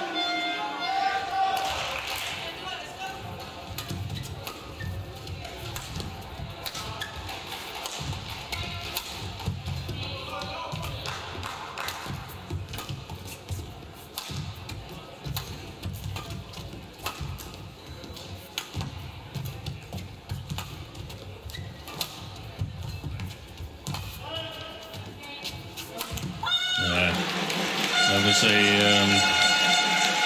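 Badminton rally: irregular sharp racket strikes on the shuttlecock and the players' footfalls on the court, echoing in a large hall. Near the end the point is over and louder music and a voice take over.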